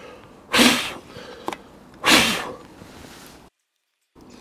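Two hard puffs of breath blown by mouth into a Harley-Davidson Sport Glide's air cleaner housing to clear out loose debris, about half a second and two seconds in. The sound cuts out abruptly near the end.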